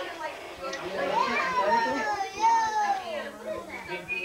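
Children's voices and overlapping chatter, with one long high-pitched child's shout through the middle.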